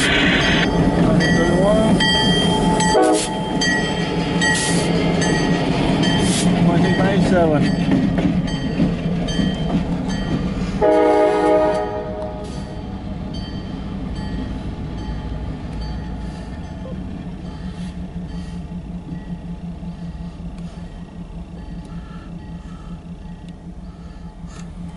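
CSX diesel freight locomotives and cars rolling past close by, engines and wheels loud, with a short horn blast about eleven seconds in. After the horn the engine rumble drops and slowly fades as the locomotives move away.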